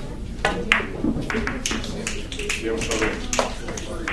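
A cue tip strikes a billiard ball about half a second in, followed by several sharp clacks as the ivory-white pyramid balls collide with each other. Murmured talk runs underneath.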